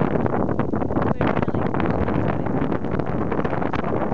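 Wind buffeting the camera microphone, a steady rumbling noise with no clear pitch.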